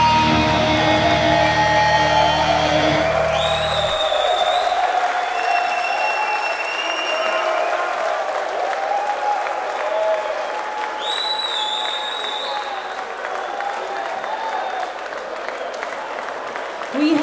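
A metal band's last chord rings out and stops about four seconds in, leaving a festival crowd cheering and applauding. Two high rising tones stand out over the crowd, one a few seconds in and one about eleven seconds in.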